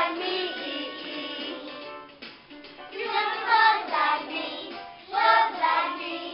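Children singing a song, the voices swelling in loud phrases near the start, around the middle and near the end.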